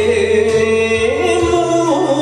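A man singing an enka ballad over a karaoke backing track, holding a long wavering note that steps up in pitch about halfway through and falls away near the end.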